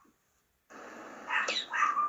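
Dog barking over a video-call connection, two sharp barks about a second and a half in, after a moment of silence: a racket.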